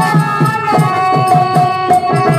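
Harmonium holding long, steady melody notes over a mridangam beat of about four strokes a second: live accompaniment for a Tamil folk-drama song.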